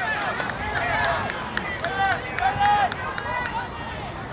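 Several voices shouting and calling out at once across an outdoor soccer field, players and sideline onlookers yelling during play, with no clear words.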